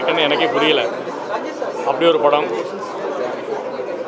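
Speech: a man talking into press microphones, with crowd chatter in the background.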